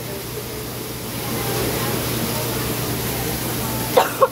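Food sizzling on a flat-top griddle: a steady hiss that grows a little louder about a second in, over a steady low hum.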